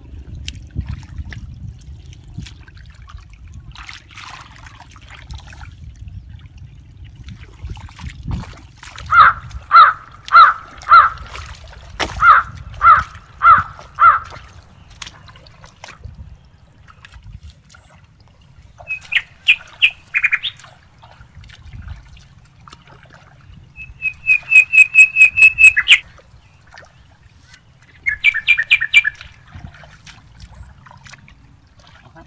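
Bird calls: a run of loud, evenly repeated notes about two a second, then shorter groups of higher notes and a fast trill near the end, over a low steady rumble of wind on the microphone.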